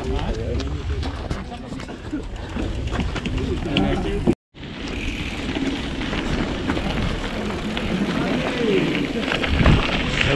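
Murmur of a group of mountain bikers' voices with scattered clicks from their bikes. The sound cuts out abruptly about four seconds in; then comes the steady rush of wind on a handlebar camera and mountain-bike tyres rolling on a dirt track, with rattles and clicks from the bike and faint voices.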